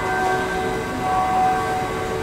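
A steady background hum made of several held tones that do not change, with no speech over it.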